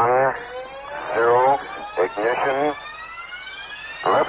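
Countdown intro sound effect: short, voice-like tones that bend in pitch, coming about once a second, with a rising sweep building up under them from about half a second in.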